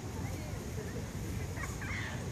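Steady low wind rumble on the microphone, with faint short bird calls over it; a small cluster of calls comes near the end.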